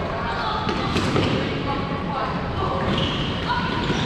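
Floorball game in a large sports hall: players' voices calling out over the clatter of sticks, the plastic ball and feet on the court, echoing in the hall.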